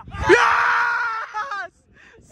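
A person's loud yell, held at one high pitch for about a second and a half, cheering a goal.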